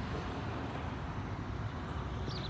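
Steady low rumble of outdoor background noise, even in level throughout.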